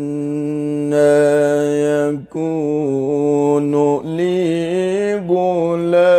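A male Qur'an reciter chanting in long, sustained melodic notes with ornamental wavering turns. There is a brief breath about two seconds in, and he moves to a higher note around four seconds in.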